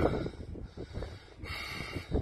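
Wind buffeting the microphone, an uneven low rumble between spoken lines.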